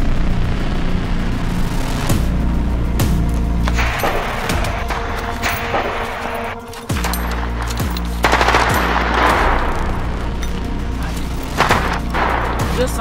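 Repeated bursts of rapid automatic-rifle gunfire, a film-style effect, over background music with a deep, steady bass.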